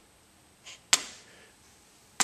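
A single sharp click of a hard object knocking on the workbench about a second in, with a fainter knock just before it; otherwise near silence.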